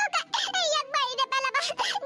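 Speech: a high-pitched cartoon character voice talking rapidly, over a steady held background tone.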